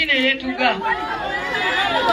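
A woman speaking into a microphone to a crowd, with background chatter from the people around her.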